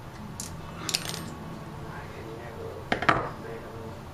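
Small metallic clicks and clinks from a thin steel wiper-blade insert strip being bent and handled by hand: a couple of light clicks around one second in and a louder cluster of clicks just before three seconds in.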